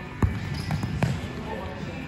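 A football kicked on a wooden indoor court in a large hall. There is a sharp thud about a quarter second in, then smaller knocks and a second thud about a second in as the ball is played on.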